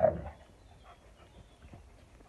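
A Saarloos wolfdog gives one short, loud yelp right at the start, followed by faint small sounds.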